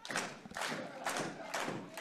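Several dull thuds on a wrestling ring's canvas, a few separate impacts over two seconds.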